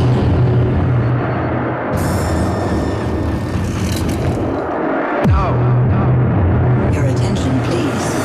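Dark industrial hardcore intro: a steady low synth drone under a dense layer of noise, cut by a sharp falling pitch sweep about five seconds in, after which the drone starts again.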